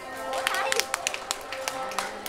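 Music starting up with steady held notes, over scattered claps and voices from the banquet-hall guests welcoming the couple's entrance.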